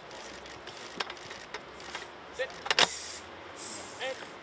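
Rugby forwards working a scrum machine: a few sharp knocks and clanks from the pads and metal frame, with a loud cluster of hits about three seconds in, and short calls from the players between them.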